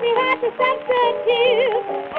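Early-1920s acoustic blues recording: several instruments play a wavering melody together between sung verses. The sound stops at about 4 kHz, as on an old 78 rpm transfer.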